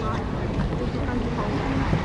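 Wind rumbling on the camcorder microphone over indistinct voices of nearby people, a steady outdoor background with no distinct event.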